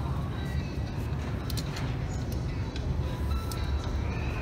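Shop ambience: background music playing faintly over a steady low rumble, with murmuring voices and a few light clicks.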